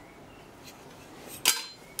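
A single sharp metallic clink about one and a half seconds in, metal knocking on metal with a brief high ring, over faint steady room noise.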